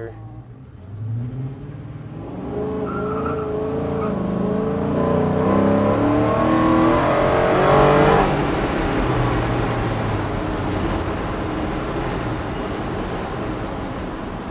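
Ford Coyote 5.0 V8 in a 1975 Ford F-250, heard from inside the cab, pulling hard: the engine note climbs in pitch and loudness for several seconds, loudest about eight seconds in, then falls back to a steadier run.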